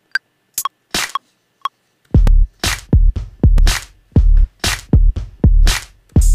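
A few short, separate percussion sample hits, then from about two seconds in a programmed electronic drum loop plays back from an Ableton Live drum rack: a deep booming kick under sharp hi-hat and percussion hits in a steady, slightly swung pattern.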